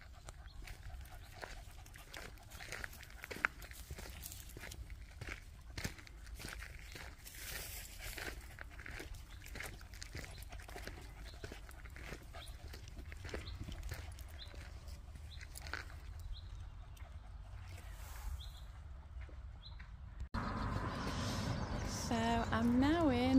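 Footsteps crunching irregularly on a gravel woodland path, with a low wind rumble on the microphone. Near the end the sound cuts abruptly to a louder outdoor background.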